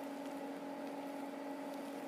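A steady low hum holding one pitch, with fainter higher tones above it and a light hiss underneath, unchanging throughout.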